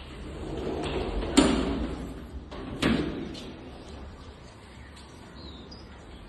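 A glass sliding door rolled open along its track, rumbling and ending in a sharp knock about a second and a half in. A second sharp knock follows about a second and a half later.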